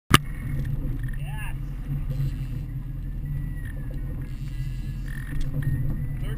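Twin Suzuki outboard motors running steadily at low speed, a constant low rumble, with a sharp knock at the very start and a short voice-like call about a second in.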